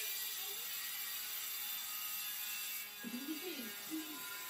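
A steady high-pitched hiss, with faint voices murmuring near the end.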